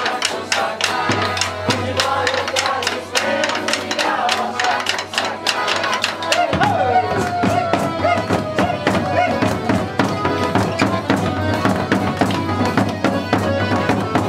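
Live folia de reis music: hand-beaten drums keeping a steady rhythm under accordion and violas. The band swells fuller about halfway in.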